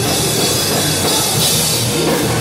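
Heavy rock band playing live at full volume: drum kit and bass guitar driving a dense, unbroken wall of sound.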